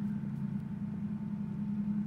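A lawnmower engine running at a steady speed, heard as a constant low hum.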